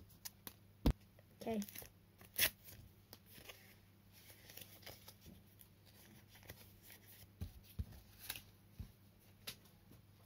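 A sticker pack being torn open by hand and the stickers inside handled: scattered short sharp rustles and snaps of wrapper and paper, the loudest about one second in and again a little later.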